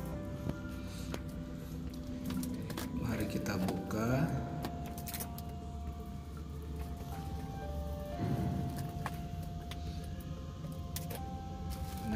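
Background music with a singing voice: long held notes and slow pitch slides.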